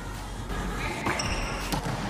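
Volleyballs being hit and bouncing on a hard indoor court in a large hall, with a few sharp hits about a second in.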